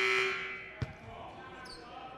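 Crowd noise in a gym dying away, then a single basketball bounce on the hardwood court a little under a second in.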